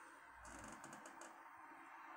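Near silence: room tone, with a quick run of faint clicks about half a second in.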